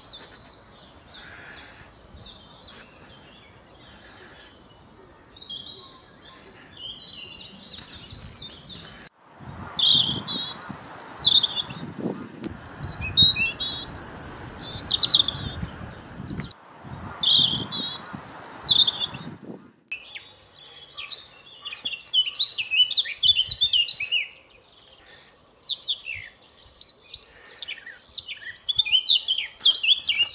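A common chiffchaff singing its steady string of repeated simple notes, followed from about nine seconds in by a European robin's varied warbling song with high, thin phrases, over a loud low noise lasting about ten seconds. Busier, denser birdsong fills the last ten seconds.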